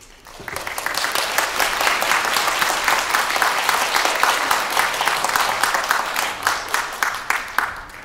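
Audience applauding, swelling up over the first second and then holding steady.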